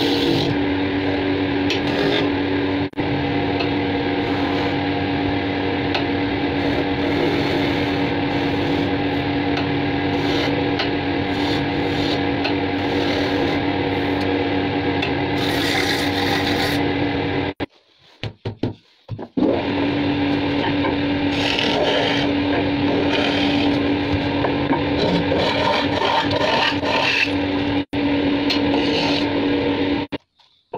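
Wood lathe motor humming steadily while a hand-held turning tool cuts a spinning cylinder of wood, a continuous scraping rasp of shavings being peeled off. A little past halfway the sound breaks off for about two seconds with a few knocks, then the turning resumes.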